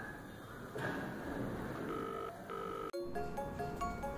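Telephone ringback tone over background music: one double ring of two short beeps about two seconds in, the call ringing at the other end. Near the end comes a quick run of short electronic beeps at changing pitches.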